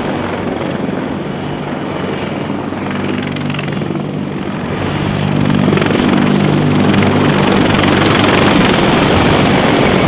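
A CH-53E Super Stallion heavy-lift helicopter flies low and steady with its engines and rotors running. The sound grows louder about halfway through as the helicopter comes close overhead.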